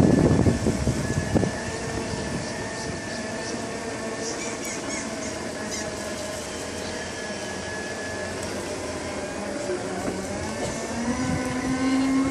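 Segway personal transporters rolling over brick paving, their electric drive motors giving a steady whine of several thin tones over a low hum. A loud low rumble fills the first second and a half. The whine steps up in pitch at about 11 s.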